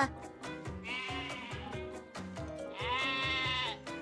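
Two long sheep bleats from cartoon sheep, the second louder, over background music with a steady beat.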